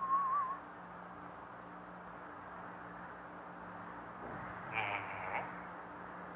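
A short wavering whistle at the start, then a low steady hum, with a faint muffled voice about five seconds in.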